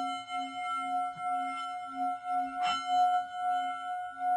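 A singing bowl ringing on after being struck, its tone wavering in a slow, regular pulse as it sustains.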